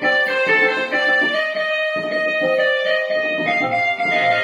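Casio electronic keyboard playing an instrumental Carnatic melody in raga Abhogi, held notes moving in steps from one to the next.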